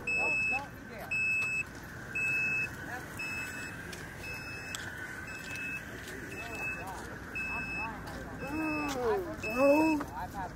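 A vehicle's electronic warning beep repeating evenly, about three short high beeps every two seconds. Voices talk quietly underneath, louder near the end.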